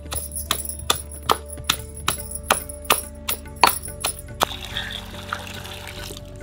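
Green chilli being pounded with a stone pestle in a stone mortar: a steady beat of sharp strokes, about two and a half a second, for some four seconds. Near the end this gives way to a stream of water pouring into an enamel bowl of raw chicken pieces to rinse them.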